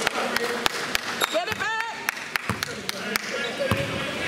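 Basketballs bouncing on a hardwood gym floor, a run of irregular sharp thuds, with a brief burst of sneaker squeaks about a second and a half in.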